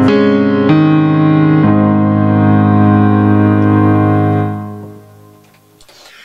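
Electronic keyboard playing the closing chords of a song on a piano sound: three chords struck within the first two seconds, the last one held and fading away about five seconds in.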